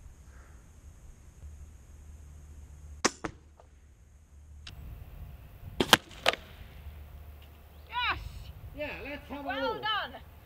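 A crossbow shot: a sharp snap of the release about three seconds in, then about six seconds in two loud, sharp hits a moment apart as the bolt tears through a hanging balloon of non-Newtonian fluid (oobleck) and strikes a foam target block. Short exclamations from voices near the end.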